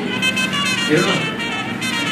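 Music with steady held notes playing under indistinct voices talking.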